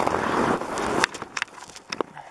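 Rustling and scraping of a jacket against packed snow with camera-handling noise as a person shifts in a snow tunnel. It cuts off suddenly about a second in, leaving a few light clicks and taps.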